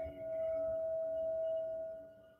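Ambient background music: a single sustained tone like a singing bowl, swelling in just after the start and fading near the end.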